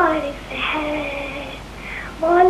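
A caller singing a qasida, a devotional Islamic poem, heard over a phone line. A held note ends just after the start, then a second, lower note is held and fades.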